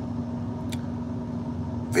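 Truck engine idling, heard from inside the cab: a steady low hum with a constant drone, and one faint tick about two-thirds of a second in.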